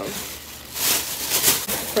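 Thin plastic grocery bag rustling and crinkling as it is handled, loudest from just under a second in to about a second and a half.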